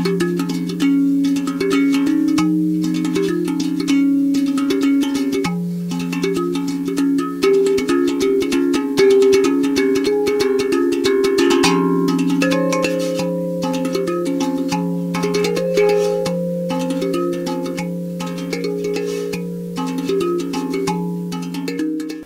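Aquadrum tongue drum played with the fingertips: a continuous run of struck notes that ring on and overlap, over a low note that sounds again and again beneath them.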